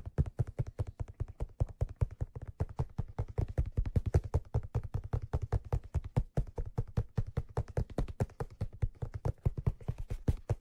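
Fingertips tapping rapidly on the crown of a black leather fedora, a quick, steady run of dull taps at about seven a second.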